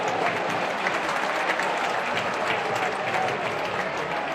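Football stadium crowd applauding and shouting in reaction to a near chance on goal that ends with the goalkeeper on the ground. The noise eases off gradually.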